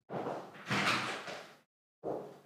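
A scraping, sliding noise of something being moved, in two surges over about a second and a half, the second louder.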